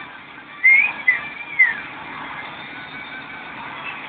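Three short whistle-like chirps, each rising and falling in pitch, in the first two seconds, over a faint steady background hiss.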